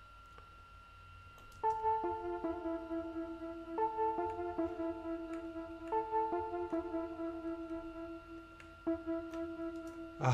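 Synth lead from the Morphine additive synthesizer playing a repeating two-note phrase of a short note followed by a longer held note, starting about two seconds in.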